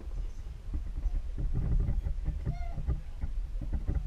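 Small hands and a marker knocking and rubbing on a cardboard box in short irregular strokes over a low rumble, with a brief squeak about two and a half seconds in.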